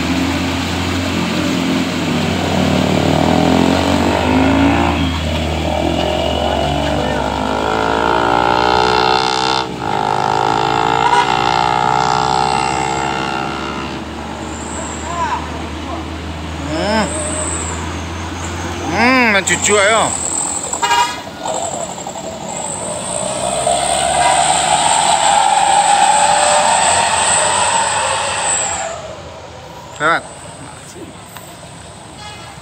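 Diesel engine of a long cargo truck pulling hard up a steep hairpin, its note rising as it gathers speed. Several short up-and-down toots come around the middle, and a steady hissing noise runs near the end.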